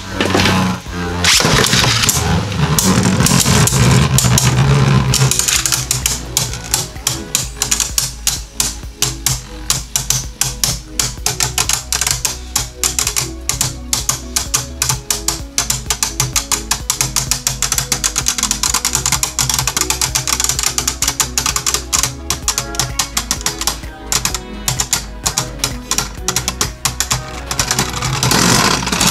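Two Beyblade Burst Turbo tops, Hercules H4 and Salamander S4, spinning in a plastic BeyStadium and knocking against each other in a fast, continuous clatter of clicks. A louder whirring rush fills the first few seconds after launch. Background music plays underneath.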